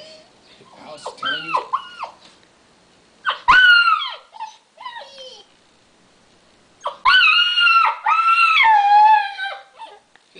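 Alaskan malamute puppy howling and 'talking' in high, wavering calls. It gives a few short calls in the first four seconds, then one long howl that rises and falls from about seven seconds in until nearly the end.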